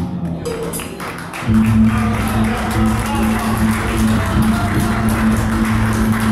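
Live rock band of guitar, bass, synth and percussion playing: after a short lull, a steady low note is held from about a second and a half in, under a busy fast high rattle.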